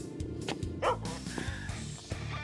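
Background music with steady low notes, and a dog giving one short bark a little under a second in.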